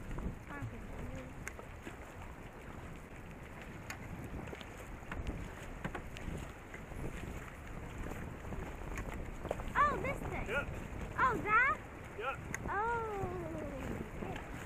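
River water rushing and splashing around a racing canoe as it paddles through rough water, with wind buffeting the microphone. In the last few seconds a voice calls out several times in rising and falling shouts.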